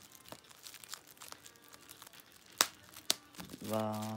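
Plastic bubble wrap handled with faint crinkling and small clicks, then two sharp bubble pops about half a second apart past the middle.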